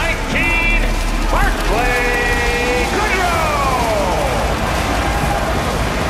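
Arena PA announcer drawing out a player's name in long, gliding calls, one sliding slowly down in pitch midway, over entrance music with a steady bass.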